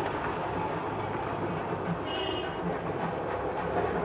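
Busy street traffic: a steady hum of passing motorbikes and scooters, with a short high-pitched beep about two seconds in.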